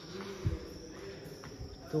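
Faint steady high-pitched insect chirring in the background, with a soft low thump about half a second in.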